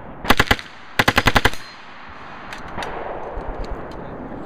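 Uzi submachine gun firing two short full-auto bursts: about four rapid shots, then a moment later a longer string of about seven.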